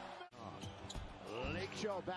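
NBA game broadcast audio: a basketball bouncing on a hardwood court, with a commentator's voice coming in quietly in the second half.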